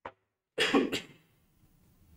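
A person coughing: a loud double cough about half a second in, the second burst short.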